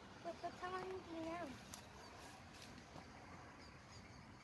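A faint, high voice calling out with drawn-out, gliding notes in the first second and a half, then only quiet outdoor background.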